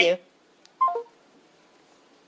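A recorded telephone call being hung up: a last "bye" trails off, the line gives a faint click, and a short falling tone sounds about a second in. Faint line hiss follows.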